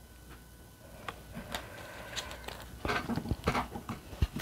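Light taps, clicks and rustles of tarot cards being handled and set down on the table, sparse at first and busier near the end.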